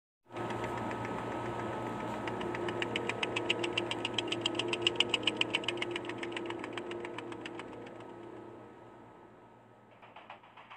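Intro sound effect: a noisy, engine-like mechanical sound with a fast rhythmic pulsing that swells to a peak about halfway and then fades away.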